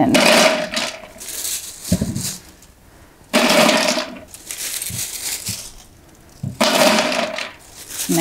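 Handfuls of dried alder cones dropped into a large, mostly empty stainless steel stockpot: three loud clattering pours about three seconds apart, the pot ringing under each one.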